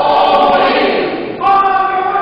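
Mixed choir of men's and women's voices singing a held chord, which breaks off briefly about one and a half seconds in and moves to a new chord.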